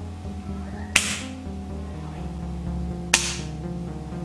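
Two sharp snaps about two seconds apart: the spring-loaded nail trigger of a homemade pen gun being released and snapping forward, over background music.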